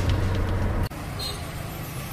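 Steady low drone of a tuk-tuk's engine and road noise heard from inside the passenger cabin. It cuts off abruptly about a second in, giving way to quieter street traffic noise.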